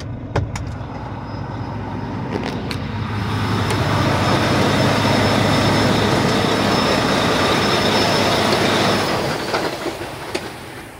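A large vehicle passing close by: a loud rumbling noise with a low hum and a faint high whine swells over a few seconds, holds, then fades near the end. A few sharp clicks come before it.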